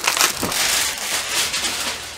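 Plastic packaging crinkling and rustling loudly as it is handled, a dense crackle that tails off near the end.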